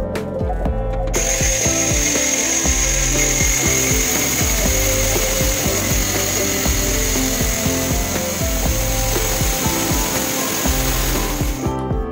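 Angle grinder with a cut-off disc cutting through a steel pipe: a steady high whine over a grinding hiss, starting about a second in and stopping just before the end, with background music underneath.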